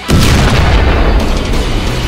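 Heavy rock music with a loud boom struck just after the start, fading away over about a second as the guitar-driven music carries on.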